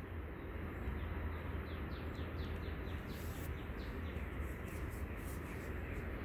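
Outdoor background with a steady low hum, and a run of quick falling chirps between about two and four seconds in, with a few faint clicks.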